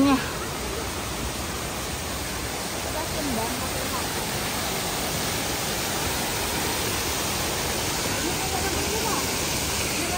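Steady rushing of a small garden waterfall cascading over rocks.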